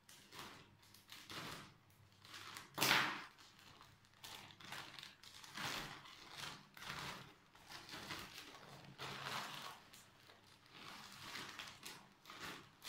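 A plastic bag of orchid bark being shaken and tipped out: the plastic crinkling and the bark chips rustling and spilling, in a string of short irregular bursts, the loudest about three seconds in.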